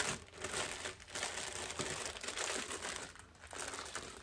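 Plastic bag crinkling and rustling as it is handled, in irregular stretches with short pauses about a second in and just after three seconds.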